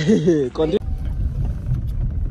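A voice for a moment, then, after a sudden cut less than a second in, the steady low rumble of a car heard from inside its cabin.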